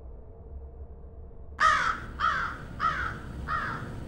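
A bird cawing: a run of about four short, harsh calls about 0.6 s apart, starting a little past a second and a half in, each falling in pitch and each fainter than the last, over a low steady rumble.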